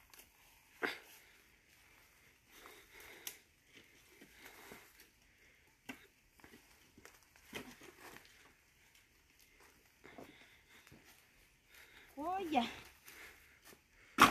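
Faint, scattered knocks of split wooden offcuts being handled and picked up from a pile, a few seconds apart. A short voice sound comes near the end.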